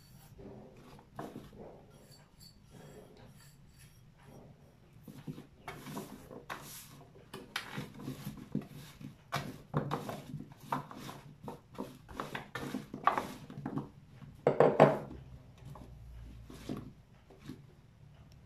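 Hands tossing and rubbing oiled carrot chunks and small potatoes in a metal baking tray: irregular soft knocks and rubbing as the vegetables roll and bump against the tin. Sparse for the first few seconds, then busy, with the loudest knocks about fifteen seconds in.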